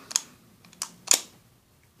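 Hard plastic clicks from a McDonald's Scratte Happy Meal toy as the button on her back is pressed and the spring mechanism pushes the figure up. A few sharp clicks, the loudest about a second in.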